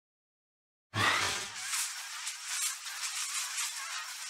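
Silence, then about a second in a logo-intro sound effect starts suddenly: a deep boom that dies away within a second, under a bright crackling hiss that carries on steadily.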